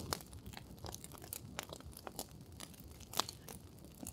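Wood fire crackling, with faint irregular snaps and pops and one louder pop a little after three seconds in.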